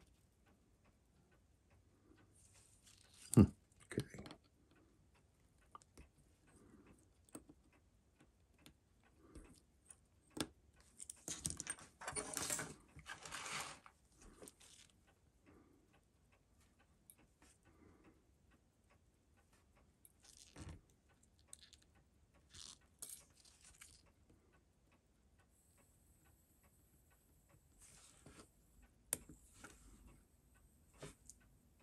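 Faint small clicks and taps of steel tweezers and parts on a Seiko 6138 chronograph movement held in a metal movement holder, with a sharper knock about three and a half seconds in and a stretch of rustling noise around twelve to fourteen seconds.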